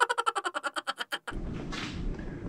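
Edited-in comic sound effect: a rapid run of pitched pulses, about a dozen a second, lasting about a second and stopping abruptly. A low steady room hum follows.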